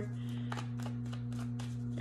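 A deck of tarot cards being shuffled by hand: a quick, irregular run of soft card ticks and slaps over a steady low hum.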